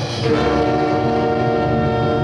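Orchestral film score holding a loud sustained brass chord, which moves to a new chord shortly after the start.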